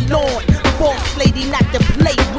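Hip hop track playing: a rapping voice over a deep bass line and a drum beat.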